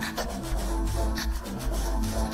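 Leftover of a backing track removed by processing: a steady low bass and faint drum hits about once a second, smeared into scratchy, rasping artifacts, with no vocals.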